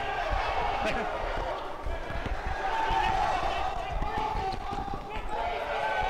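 A basketball bouncing on a hard court in irregular thumps, amid players' voices from the game.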